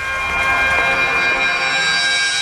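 Sustained electronic synth drone: many steady high tones held together, swelling slightly at the start, a transition cue in the score.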